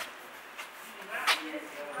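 Faint outdoor street background, with a brief breathy noise a little over a second in and a man's voice starting faintly near the end.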